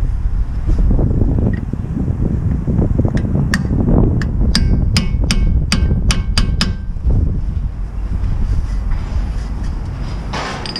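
A run of about nine sharp metallic clicks from a hand tool working at the van's front wheel hub nut, over a steady rumble of wind on the microphone.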